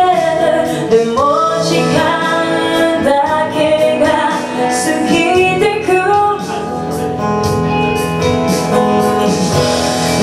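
A woman singing a ballad-style melody into a microphone over strummed and picked acoustic guitar, played live through a PA.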